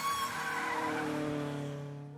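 Sound effect on a spinning title logo: a noisy rush with faint wavering tones that fades away toward the end, the tail of the closing theme.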